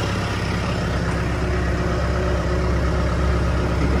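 2013 JLG G9-43A telehandler's diesel engine idling steadily, a low, even running sound.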